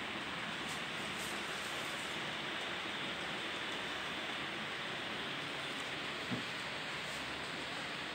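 Steady, even hiss of background noise, with one soft knock about six seconds in.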